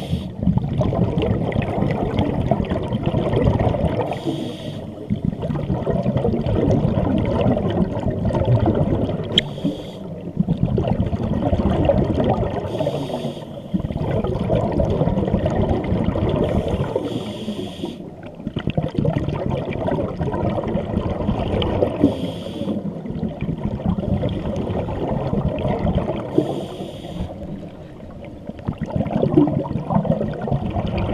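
Scuba regulator breathing heard underwater: long bubbling rushes of exhaled air, broken every four to five seconds by short quieter pauses for the next breath.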